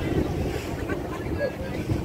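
Wind buffeting the microphone in a steady low rumble, with scattered voices of a crowd talking around it.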